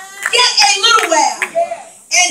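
A high-pitched, raised voice calling out in a church, with a handclap at the start.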